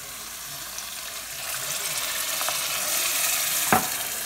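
Water poured from a measuring cup into a hot pot of browned rice, onion and tomatoes, sizzling and hissing, getting louder over the first three seconds. A single sharp knock near the end.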